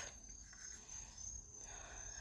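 Faint background noise: a steady high-pitched tone with a low hum underneath.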